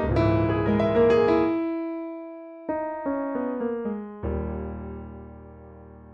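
Roland RP102 digital piano playing an acoustic piano sound: a busy run of chords that is let ring and fade about a second and a half in, then two more chords about a second and a half apart, each left to die away.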